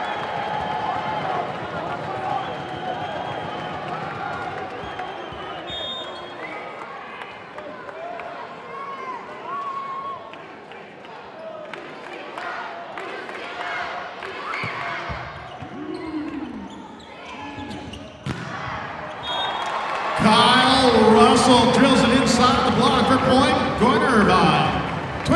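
Volleyball arena crowd sound during a rally: a steady murmur of spectator voices with sharp thuds of the ball. About 20 seconds in, the crowd bursts into loud cheering as the home side wins the point.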